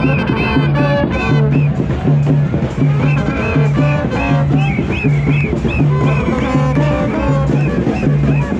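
Papare brass band playing in the stands, trombones and sousaphone up close, with a steady bass line pulsing about three notes every two seconds under the brass.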